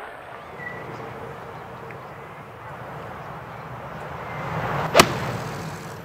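A golf swing rushing through the air, then the sharp crack of the club striking the ball from the fairway, about five seconds in, over a steady outdoor background.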